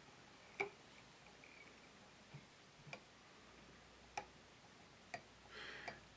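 Near silence broken by a few faint, sharp clicks spaced a second or more apart: a whip-finish tool and thread working at the head of a fly held in a vise.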